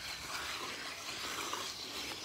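Quiet outdoor background noise, a faint even hiss with no distinct sound events.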